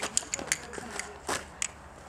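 Irregular sharp clicks of hand-held wooden castanets, about six or seven in two seconds.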